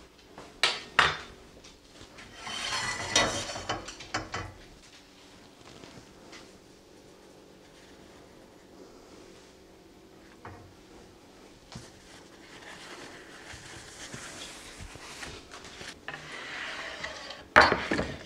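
Kitchen handling sounds: a knife clicks and scrapes on a wooden cutting board early on. A buttered sandwich then toasts in a stainless steel skillet with a soft sizzle that builds over several seconds, and metal tongs click against the pan near the end.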